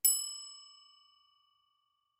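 A single bell-like chime sound effect, struck once and ringing out, fading away over about a second, used as a title-card transition.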